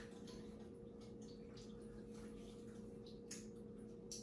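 Faint scattered water drips and small wet splashes in a tiled shower stall, with hands rubbing soapy wet skin, over a steady low hum.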